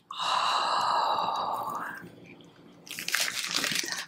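A long, breathy gasp of surprise lasting about two seconds, then a short lull and wrapping paper crinkling in the hands near the end.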